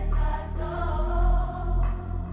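Melodic UK drill instrumental: a deep bass line that changes note about a second in, under a choir-like vocal sample.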